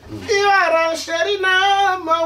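A high-pitched singing voice holding long, wavering notes that step up and down in pitch.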